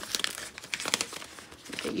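Paper crinkling in short scattered crackles as hands unwrap and unfold an item from its packaging.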